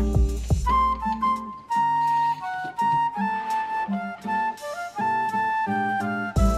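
Background music: an instrumental track with a held melody line over chords. The bass and drums drop out about a second and a half in.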